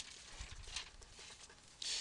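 Faint scratching of a felt-tip marker writing on paper: a few light, scattered strokes, with a brief louder hiss near the end.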